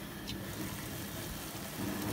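Steady low rushing of rice and stock cooking in a lidded pot on a stove burner, with a faint click about a third of a second in.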